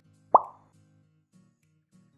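A short rising 'bloop' pop sound effect marks the title card's appearance, followed by soft background music with low, stepping notes.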